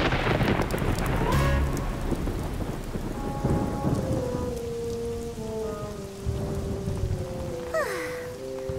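Rain falling steadily, with a deep rumble of thunder in the first couple of seconds. About three seconds in, soft held music notes come in over the rain, stepping slowly downward.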